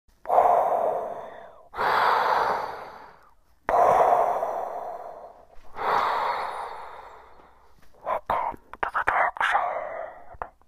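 A man imitating Darth Vader's respirator breathing into his cupped hands: four long, heavy breaths, each starting suddenly and dying away. From about eight seconds in, a quick run of short choppy puffs follows.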